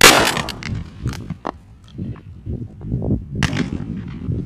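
A shotgun shot right at the start, a sharp loud report that dies away over about half a second, followed by a second, fainter report about three and a half seconds in.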